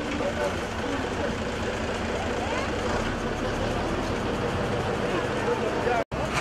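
Voices of people talking at a distance over a steady rumbling background noise, cut off abruptly at the end.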